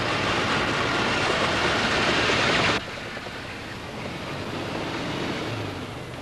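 Tracked snow vehicle running, its engine and tracks heard loud and close. About three seconds in the sound drops abruptly to a quieter, more distant run of the vehicle.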